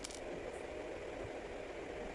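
Faint, steady background noise (room tone) with no distinct handling sounds.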